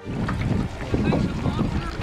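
Wind buffeting the microphone on a boat at sea: a steady, fluttering low rush.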